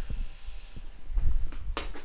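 A low thump from a child's foot landing on a rubber gym floor as he lunges to catch a falling broom, then a short sharp sound near the end as his hand grabs the broom handle.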